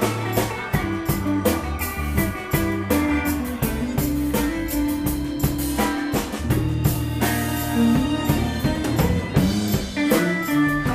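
Live rock band playing an instrumental passage: a steady drum-kit beat under electric guitar, keyboard and fiddle, with one note held for a few seconds near the middle.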